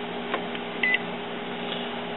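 Epson WorkForce inkjet printer's touchscreen control panel giving one short, high beep just under a second in, the confirmation tone as the Proceed button is tapped. It sounds over a steady low hum.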